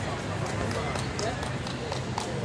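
Indistinct voices talking, with a few sharp taps or clicks that come more often near the end.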